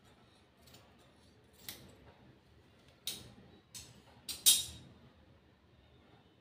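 Scissors snipping through cotton blouse fabric: a handful of short, sharp snips spread irregularly, the loudest about four and a half seconds in.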